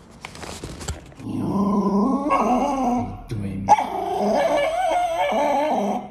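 A small dog vocalizing in long whining growls that waver in pitch: a lower one from about a second in, then, after a short break, a higher, warbling one that runs until the clip cuts. A cardboard burger box crinkles as it is handled at the start.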